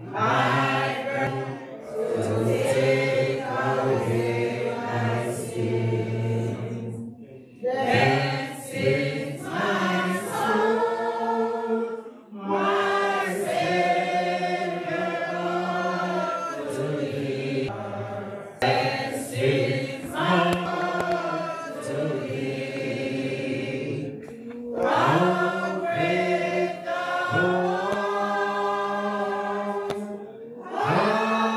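Congregation singing a hymn, with a man's voice leading over a microphone, in phrases of about five to six seconds with short breaks between them.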